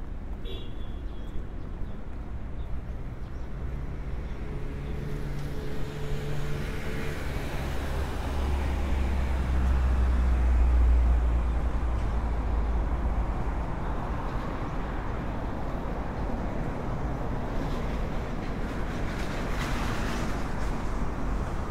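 Road traffic on a city street: steady traffic noise, with a passing vehicle's low engine rumble that swells to its loudest about ten seconds in and then fades.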